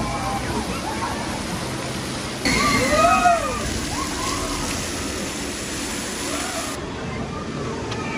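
Water pouring steadily from a water curtain onto a roller coaster track, with riders on the passing train shouting and whooping in rising-and-falling calls. The loudest shouts come about three seconds in.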